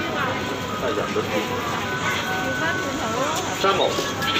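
Busy street crowd chatter and traffic noise, with the chime melody of an ice cream van's music box playing through it in thin, steady notes.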